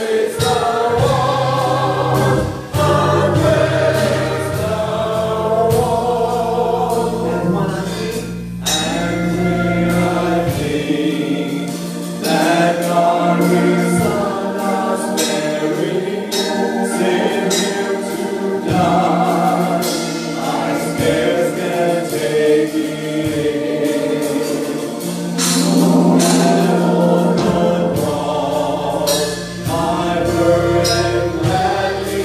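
Gospel choir singing with keyboard accompaniment, the keyboard holding low bass notes that change every few seconds under the voices.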